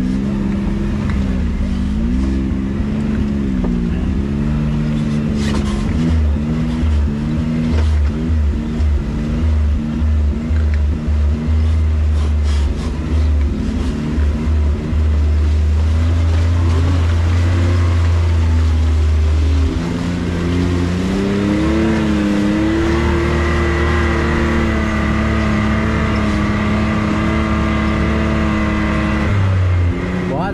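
A Can-Am Maverick X3's three-cylinder engine works along a rough trail under a heavy low rumble, its revs rising and falling with the throttle. About two-thirds of the way through the revs climb and then hold fairly steady.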